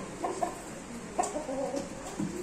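Chicken clucking in two short bouts, one just after the start and another past the one-second mark.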